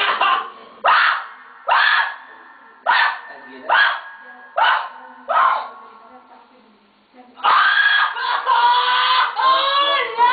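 A woman crying out without words: a run of about seven short, sharp cries, then, after a brief pause, continuous wailing with a wavering pitch.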